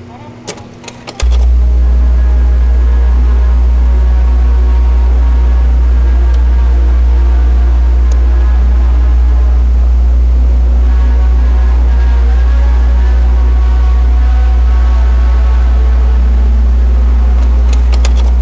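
A few sharp clicks, then about a second in a very loud, deep, steady electronic drone starts abruptly. Fainter wavering tones sound above it.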